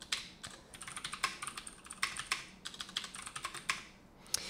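Typing on a computer keyboard: an uneven run of quick key clicks.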